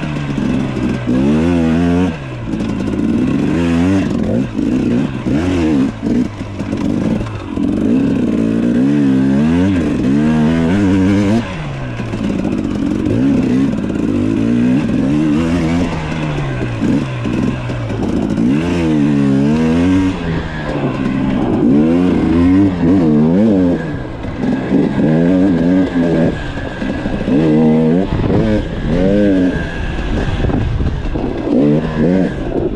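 Off-road motorcycle engine revving up and down as it is ridden, its pitch rising and falling every second or two with the throttle.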